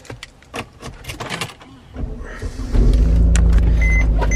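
A Mercedes-Benz key fob clicks into the dashboard ignition slot, the starter cranks about two seconds in, and the engine catches and settles into a steady idle. A dashboard warning chime starts beeping near the end.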